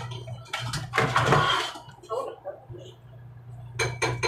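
Dishes and cutlery clinking and scraping as food is served onto a plate, busiest about a second in, then quieter, over a steady low hum.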